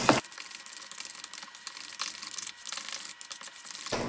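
A fork stirring and mashing soft sweet potato crust dough in a stainless steel mixing bowl, faint.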